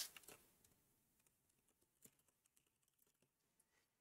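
Near silence, with a few faint computer keyboard key clicks and one slightly louder click about two seconds in.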